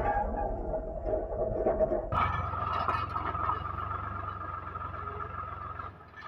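Swaraj 735 FE tractor's three-cylinder diesel engine running steadily under load while pulling a land leveler across a field. About two seconds in, the sound changes abruptly to a higher tone.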